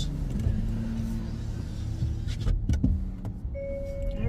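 A car's electric window running up and closing, with a knock as it shuts about two and a half seconds in, over a steady low cabin rumble.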